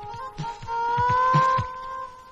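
Film background score: a few steady held electronic tones over low, deep thuds, some coming in close pairs like a heartbeat, loudest in the middle.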